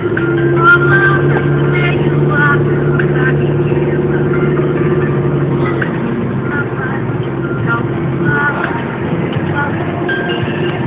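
A Toyota car driving, heard from inside the cabin: a steady low engine and road drone that holds for about six seconds, then eases off.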